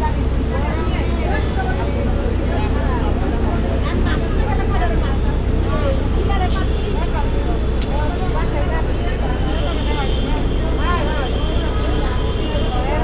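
Several people talking at once, indistinct voices over one another, over a steady low hum.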